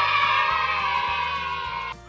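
A bright, sustained musical sound effect, held about two seconds with a slight downward drift in pitch, then cut off suddenly. It plays over a softer background music track.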